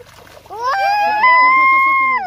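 A high-pitched, drawn-out excited voice cry that starts about half a second in, rises in pitch and is then held on one note, over the splashing of a hooked fish thrashing at the surface of a pond.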